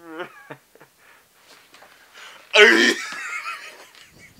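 A person's short, loud vocal outburst about two and a half seconds in, lasting about half a second, after a few soft clicks.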